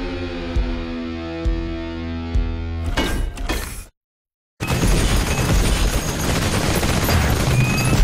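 Film-trailer score: a sustained chord punctuated by low hits about once a second, a quick flurry of hits, then a sudden drop to silence about four seconds in. After the silence comes a dense burst of action sound effects, gunfire and explosions with shattering.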